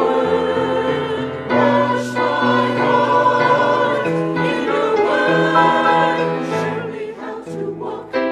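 Mixed church choir of men and women singing an anthem in held, sustained chords.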